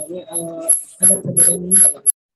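A person's voice over an online call, garbled and broken up, with a rapid clicking distortion of about four clicks a second laid over it: the call audio is breaking up.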